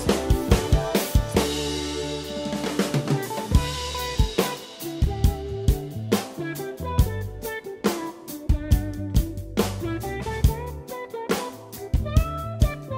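An acoustic drum kit with Zildjian K cymbals, played along to a song's instrumental backing: kick and snare strokes and cymbal work over sustained pitched instruments. The drumming thins out for a moment a third of the way in, then picks up again.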